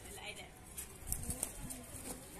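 Domestic teddy high-flyer pigeons cooing: a few short, low coos about halfway through and near the end.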